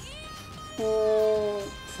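A woman's drawn-out, thinking 'hmm', held at one pitch for about a second and starting a little under a second in, over faint background music.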